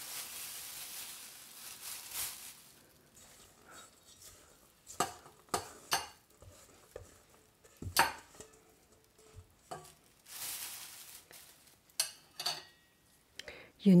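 Silicone spatula scraping soft cookie dough out of a stainless steel mixing bowl into a plastic bag. The plastic rustles in stretches, and the spatula knocks sharply against the metal bowl several times.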